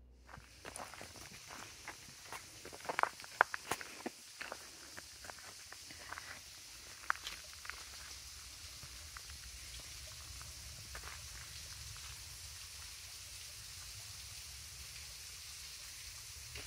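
Footsteps of a hiker on a leaf-littered woodland trail: irregular crunches and scuffs for the first seven seconds or so, loudest around three seconds in, then they stop. A steady high hiss runs underneath.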